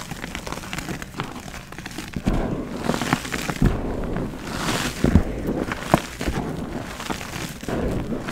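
Pressed gym chalk crumbling and crunching in bare hands, with loose chalk powder sifting and spilling. The crunches come thick and irregular, and grow louder and denser from about two seconds in.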